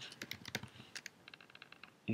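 Faint computer keyboard typing: a few single keystrokes, then a quick run of them in the second half as a word is typed.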